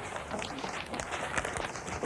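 Rustling and crinkling of wrapping paper with irregular light taps and scrapes as children handle and write on wrapped presents.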